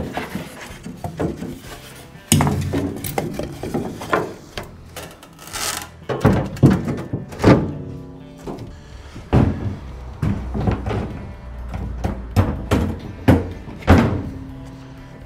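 Background music, with a series of knocks and thunks as foam panels and plywood floor boards are laid and shifted into place in an aluminum jon boat hull.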